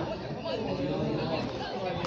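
Background chatter: several people talking at once, their voices overlapping.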